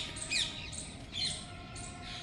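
Birds calling among the palm trees: about three short, high calls, each sliding down in pitch, over faint open-air background.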